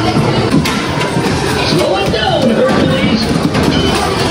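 Amusement arcade din: a dense, steady wash of game-machine noise with scattered clicks and rattles running through it.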